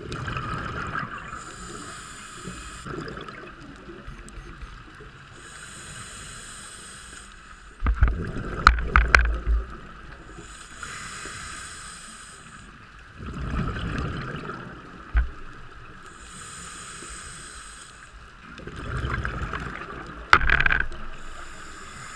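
A scuba diver breathing underwater through a regulator: hissing inhalations alternate with louder gurgling bursts of exhaled bubbles, about one breath every five seconds. The bubble bursts are the loudest sounds.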